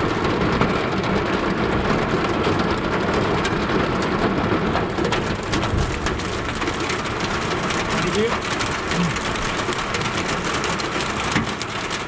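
Hail and rain falling on a car's roof and windows, heard from inside the cabin: a dense, steady patter of countless small hits with no let-up.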